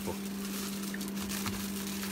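A steady low hum under faint background noise, with a couple of light clicks about a second in.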